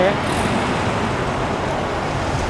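Steady road traffic noise from cars driving along a city street, with a vehicle passing close by.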